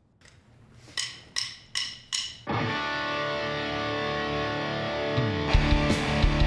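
Drumsticks clicked together four times as a count-in, then a rock band starts the song with held, ringing chords; near the end the drums and bass come in with heavy beats.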